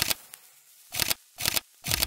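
Four short, sharp swishes of noise added in the edit: one at the start, then three more about a second in, half a second later and at the end, with near silence between them.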